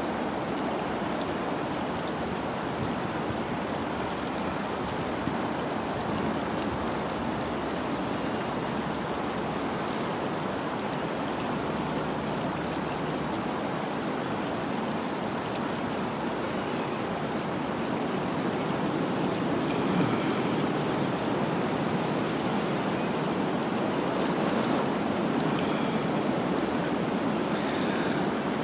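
Steady rushing of wind through bare woodland, swelling a little in the second half.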